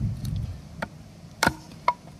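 Small hatchet chopping into a softwood board to split kindling: three sharp knocks of blade on wood, the loudest about one and a half seconds in, the last with a brief ring.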